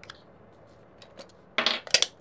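A few light clicks, then a short, sharp clatter of small hard objects near the end: batteries being taken out of a musical snow globe's base.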